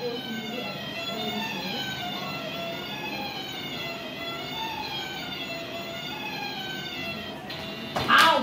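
An electronic tune playing steadily from a shock reaction game toy, its waiting music before the lights turn green. The tune stops shortly before the end.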